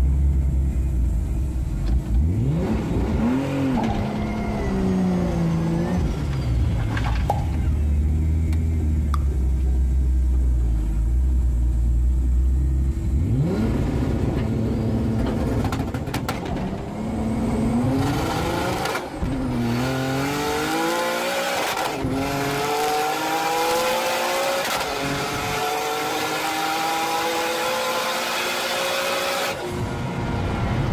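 A car engine heard from inside the cabin, idling and revved once or twice at the drag-strip start line. About 13 seconds in it launches and accelerates hard, with three gear changes a few seconds apart, the revs climbing again after each.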